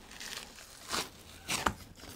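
Membrane being peeled off the back of a rack of raw pork ribs with a paper towel: short crinkling, tearing sounds, about a second in and again about a second and a half in.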